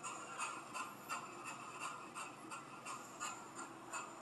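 Faint electronic static from a spirit box (the 'black box') sweeping through radio channels, pulsing about three times a second over a steady hiss.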